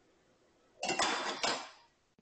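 A smoothie shaker's lid knocked off the bottle, falling and clattering for about a second with several sharp knocks. The sound starts suddenly a little under a second in and fades out.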